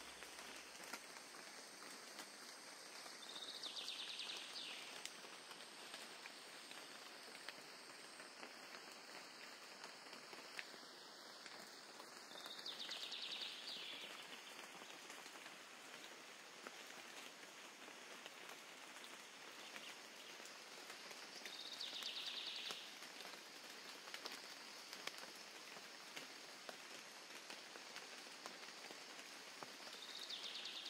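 Faint outdoor ambience: a steady soft hiss, with a brief high trill repeating four times, about every nine seconds.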